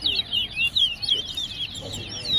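Caged towa-towa bird singing a fast run of high whistled notes that sweep up and down.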